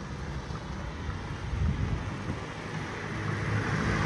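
Street traffic noise: a steady rush of passing vehicles that grows a little louder near the end.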